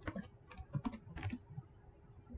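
Computer keyboard typing: a quick run of about seven keystrokes in the first second and a half, then it stops.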